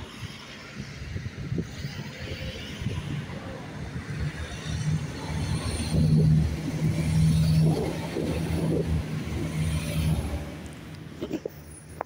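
Regional diesel multiple-unit train passing close by. Its engine drone builds, is loudest around six to eight seconds in, then fades as the train moves away.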